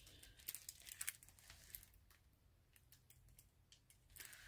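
Faint crinkling of the clear plastic film on a diamond painting canvas as it is handled, a few soft crackles in the first two seconds, then near silence.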